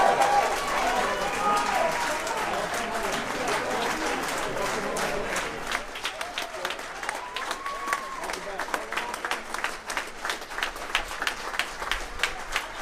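A crowd applauding, with voices calling out over it. The clapping is dense at first and thins about halfway through, so that single hand claps stand out.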